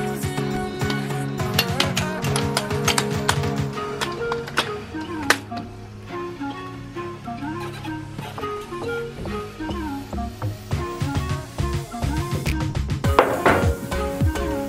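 Background music: a track with melodic notes over a steady beat.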